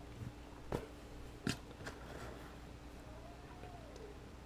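A few faint clicks as a power plug is pushed into a Raspberry Pi and its cable handled, the clearest about a second in and at one and a half seconds, over a low steady hum. A faint tone rises and falls just before the end.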